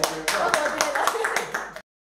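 Hand clapping, quick and uneven, with voices mixed in; the sound cuts off suddenly near the end.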